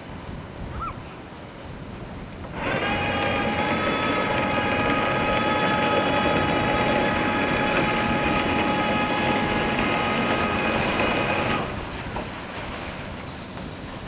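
Boat horn sounding one long, steady blast of about nine seconds, starting suddenly a few seconds in and cutting off sharply, over a low background rumble.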